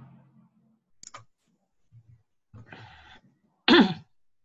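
A single short cough near the end, heard through a video call's audio, after a faint click about a second in and a brief breathy sound.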